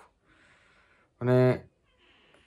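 A man's tired sigh: a soft breathy exhale, then a short loud voiced groan a little after a second in, followed by a faint intake of breath.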